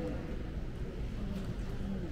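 Indistinct voices murmuring over a steady low rumble, with no music playing.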